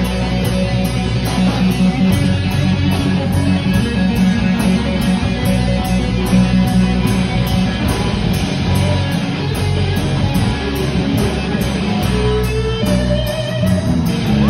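Live rock band playing an instrumental stretch: electric guitar to the fore over bass and drums, with no singing. Near the end the lead guitar holds a few sustained notes that step up in pitch.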